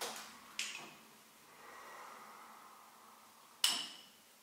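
Wooden cupping cups clacking sharply three times as they are handled and set down during fire cupping; the last click, near the end, is the loudest.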